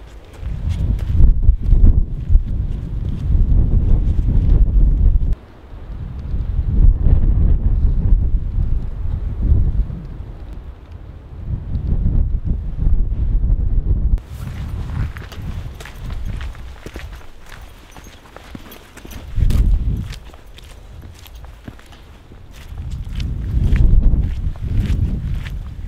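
Wind buffeting the microphone in gusts, coming and going in loud low surges. Footsteps on an icy trail come through, with a run of sharp clicks in the second half.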